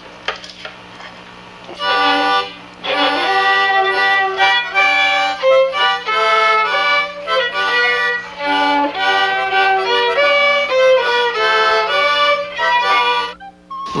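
Violin and harmonica played together by one musician, the harmonica held in a neck rack, playing a Carpathian shepherd's tune. The music begins about two seconds in and stops just before the end.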